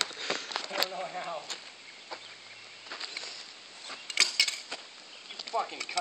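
A few sharp knocks and clicks, with a quick cluster of them about four seconds in, between short bursts of laughter and voices.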